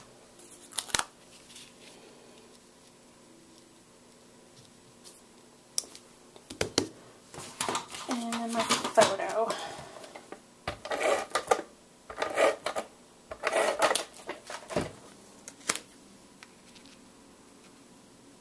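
Paper and crafting tools being handled on a cutting mat: clusters of rustling, sliding and sharp clicks, busiest around the middle, with quiet stretches between.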